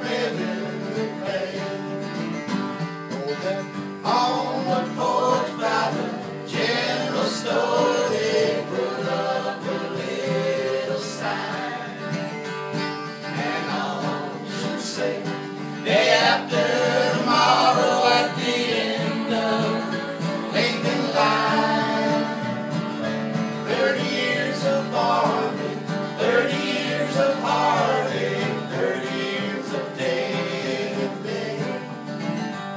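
Instrumental break in a country song played by a small acoustic band: a bowed fiddle carries the melody over strummed acoustic guitars, with a soprano saxophone.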